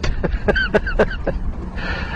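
A man laughing in a quick run of short breathy bursts that fade out a little past halfway.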